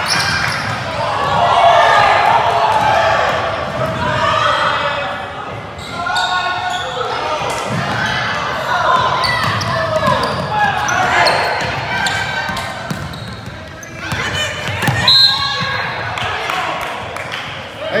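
Basketball game on a hardwood gym floor: the ball bouncing among players' and onlookers' voices, echoing in the large hall.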